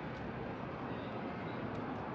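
Steady city background noise in a covered walkway: an even rumble and hiss with no distinct events.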